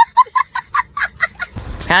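A small child laughing hard in rapid high-pitched bursts, about six a second, stopping about one and a half seconds in.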